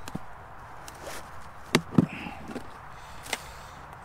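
Handling noise: a few sharp clicks and knocks as things are picked up and moved by hand, the two loudest close together about two seconds in, over faint steady background noise.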